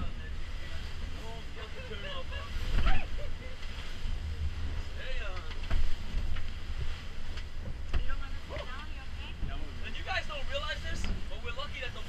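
Robalo powerboat pounding through rough seas: a steady low rumble of wind buffeting the microphone and the running boat, with two hard hull slams about three and six seconds in, and indistinct voices.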